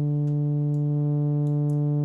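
Arturia Pigments software synth pad patch, built on its analog engine with a Matrix 12 filter, sustaining a held note at a steady level, played from a QuNexus keyboard controller. Faint clicks of the controller's pads are heard over it.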